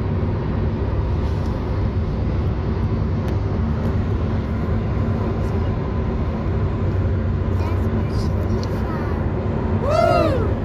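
Steady low rumble of road and engine noise inside a moving car's cabin, with a few faint clicks. A short sound with a pitch that bends up and down comes right at the end.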